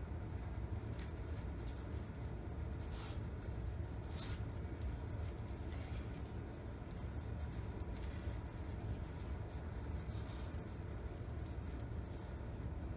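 Steady low rumble of room noise, with a few brief soft rustles.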